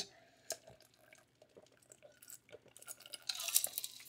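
Faint sounds of a person drinking from an insulated tumbler and handling it: one small click about half a second in, then small clicks and knocks that get busier near the end.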